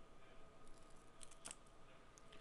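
Near silence: faint room tone with a thin steady hum, and a few faint clicks about a second and a half in.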